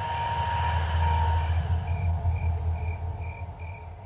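A low rumble swells up and slowly fades, laid over a steady background of crickets chirping in a regular pulse a little over twice a second.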